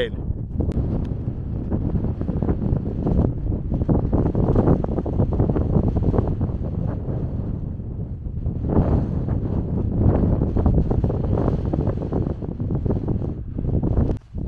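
Strong wind buffeting the camera microphone: a loud, gusting rumble that swells and eases a few times.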